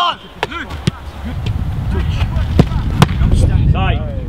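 Footballs being struck during a shooting drill: four sharp thuds, two close together about half a second in and two more in the second half. From about a second in, wind rumbles on the microphone.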